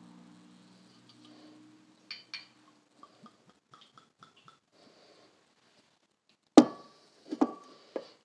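Glass bottle of blue curaçao being handled: two small clicks as it is uncapped, a few light ticks as it pours into a glass, then a loud sharp knock with a short ring about six and a half seconds in, and a second clink near the end, as glass meets the granite countertop.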